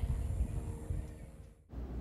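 Faint outdoor background noise, mostly a low rumble with a slight steady hum, fading away about a second and a half in.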